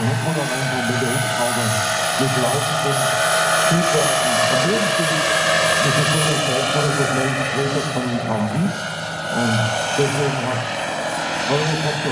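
Turbine-powered RC scale model of a Eurocopter EC120 Colibri helicopter in flight: a steady high turbine whine over the sound of the rotor.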